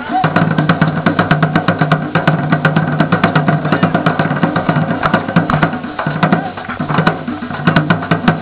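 Several drums playing together in a fast, steady rhythm, with many strikes a second: hand drums beaten by palm and a large double-headed drum beaten with a stick, its low tone sounding under the strikes.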